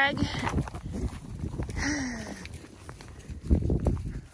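Footsteps on snow and trampled hay among a herd of beef cattle, with a short low call that falls in pitch about two seconds in and a few dull knocks near the end.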